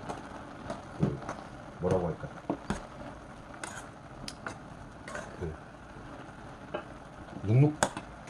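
A metal spoon stirring soybeans braising in soy sauce in a nonstick pot, clinking and scraping against the pot several times at irregular moments, over the steady soft hiss of the liquid simmering down.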